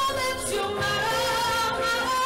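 A woman singing solo into a handheld microphone, holding long, slightly wavering notes.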